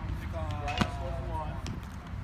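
A weighted training ball smacking into a catcher's mitt once, about a second in.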